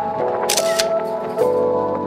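Background music with sustained, layered tones, and a short, sharp noise burst about half a second in.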